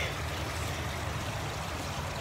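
Fountain water splashing steadily into a pool, an even rushing with no breaks.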